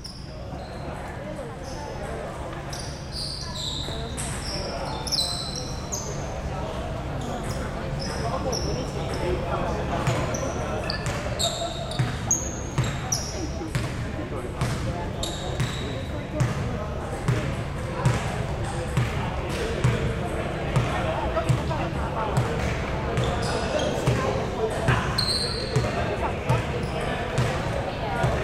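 A basketball bouncing again and again on a hardwood gym floor, with short high squeaks of sneakers, mostly in the first half, and indistinct players' voices echoing around a large sports hall.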